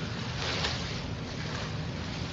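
Steady hiss with a low hum: background noise of an open microphone carried over an online voice-chat connection.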